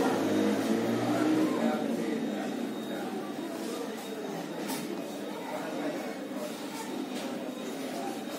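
Indistinct voices of people talking, loudest in the first second or so, then a fainter murmur, with a few faint clicks.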